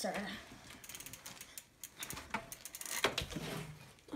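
Mountain bike's rear freewheel ratcheting in quick clicks as the bike rolls, with a few louder knocks from the bike, the loudest about three seconds in.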